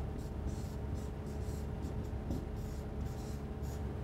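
Marker scratching on a green board as Chinese characters are written, a series of short strokes about two a second, over a steady low room hum.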